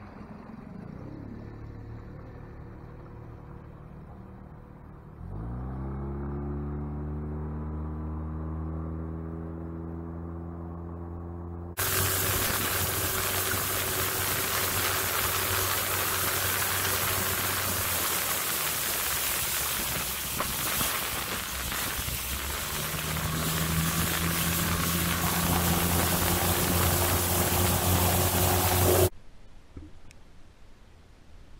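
Small outboard motor on a gheenoe starting about five seconds in, its pitch rising as it revs up and then holding steady. About twelve seconds in, a loud rush of wind on the microphone covers the motor as the boat runs underway. The motor's pitch steps up again a little past twenty seconds, and the sound cuts off just before the end.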